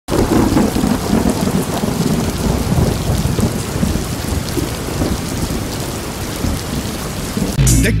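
Heavy rain with thunder rumbling underneath, a dense steady rush; a song starts abruptly near the end.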